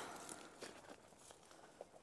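Near silence with a few faint ticks and rustles of footsteps on dry twigs and dead grass of the forest floor.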